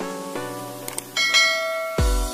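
A short click about a second in, then a bright bell chime rings on, over soft background music: the sound effects of a subscribe-and-notification-bell animation.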